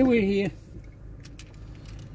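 A child's short voice, then a few light clicks and jingles of keys being handled, over a low steady hum inside a car.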